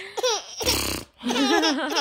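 An infant laughing and giggling in short, high-pitched pulses, with a brief breathy rush about halfway through before the laughter picks up again.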